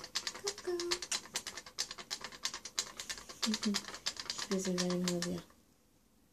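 Rapid, irregular light clicking and scratching of a small rodent's claws scrabbling about, with a few short murmured voice sounds. The sound stops abruptly about half a second before the end.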